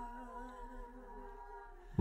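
A faint held hum-like tone: one steady pitch with a slight wobble that fades near the end.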